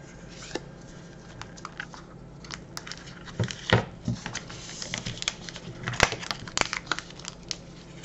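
Plastic wrapper of a Milka chocolate bar crinkling and crackling as fingers handle it and unfold its folded back seam, with irregular sharp crackles that are loudest in the middle of the stretch.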